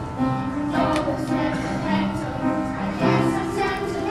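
Junior vocal ensemble of young girls singing a song together as a choir.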